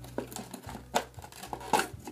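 A doll's packaging rustling and crackling as the doll is pulled out of its box by hand, with a handful of short, sharp crackles.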